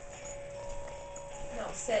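A small dog's claws clicking on a vinyl kitchen floor as it moves and rises up toward a treat, with a steady background tone throughout. A woman says "sit" near the end.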